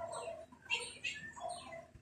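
An animal's short pitched calls, repeated about four times, each gliding downward, faint in the background.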